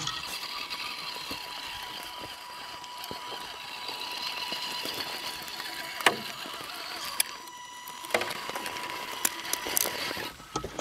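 The electric motor and geartrain of an Axial Wraith/Honcho-based RC crawler whining steadily as the truck crawls over rough trail. A few sharp knocks from the tires and chassis hitting sticks and ground come about six and seven seconds in and again near the end. The whine eases briefly a little after seven seconds, then picks up again.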